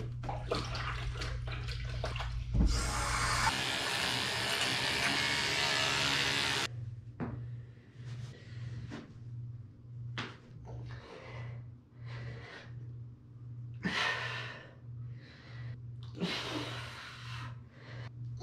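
A kitchen tap runs full for about four seconds and then stops abruptly. After that comes rhythmic hard breathing, about one breath a second, from someone doing push-ups.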